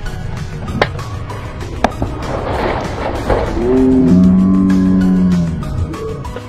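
A golf club strikes the ball, and about a second later the ball hits an SUV's side window with a sharp crack, shattering the glass. This is followed by a long, drawn-out shout of 'ohhh', the loudest sound here, over background music.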